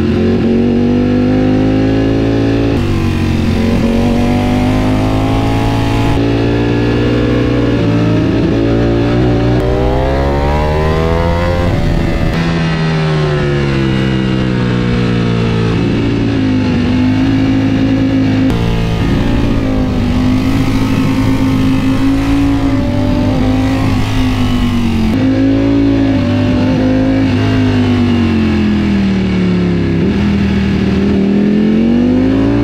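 Ducati sportbike engine heard from the rider's seat, its pitch rising and falling with throttle changes and gearshifts, over a steady rush of wind. There is a long climb in revs about ten seconds in and a drop to lower revs near the end.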